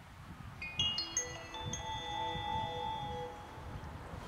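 Station PA chime: a short run of clear bell-like notes sounding one after another, ringing on and fading, the signal that comes just before the automated announcement of a train passing through the station.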